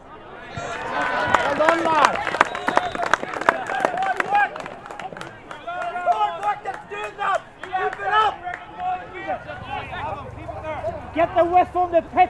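Several voices shouting and calling at once across a Gaelic football pitch, with a quick run of sharp knocks in the first few seconds.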